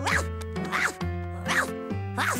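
Cartoon soundtrack music with a quick rising, zip-like sound effect repeated about three times, in time with an animated dog's hops.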